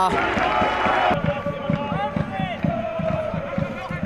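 Football match ambience: a rush of crowd noise that cuts off abruptly about a second in, then voices calling out on and around the pitch with repeated dull thuds of running and ball contact.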